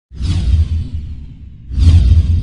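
Two whoosh sound effects for an animated logo intro, each a falling swish over a deep bass boom. The first starts almost at once and fades out; the second hits near the end.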